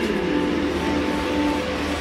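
A stadium PA announcer's drawn-out call of a player's name trails off and echoes through a domed stadium. Its tail holds steady over the hall's low rumble.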